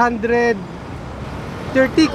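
A voice trailing off, then a steady hum of outdoor traffic noise for about a second, with a short bit of voice near the end.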